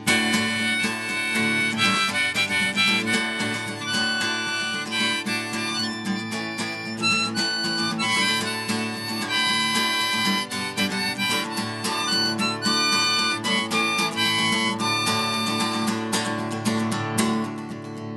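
Instrumental intro to a self-written acoustic song: a harmonica melody of held notes over acoustic guitar, starting right after a count-in.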